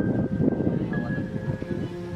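Wind rumbling on the camera's microphone, under a steady held note of background music.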